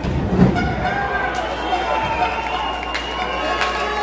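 A heavy thud as a wrestler's body crashes onto the ring canvas about half a second in, the loudest sound here. Voices from the crowd shout throughout, with a few sharp slaps or claps near the end.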